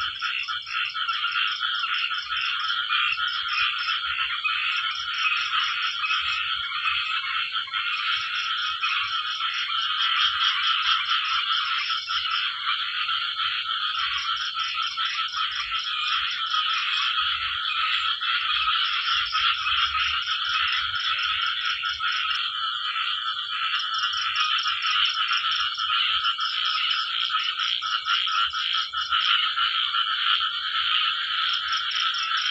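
A dense chorus of frogs calling at night after rain, many voices overlapping into a steady din. A rapid, high pulsed trill comes and goes in runs of a few seconds over it.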